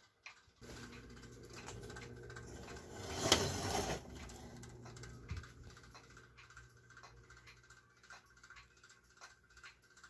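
Small electric motor of a vintage color wheel humming steadily while it spins the wheel; the motor is not yet fastened down, which is why it hums. A brief louder rustle comes about three seconds in, and from about six seconds on light ticks repeat about twice a second as the hum fades.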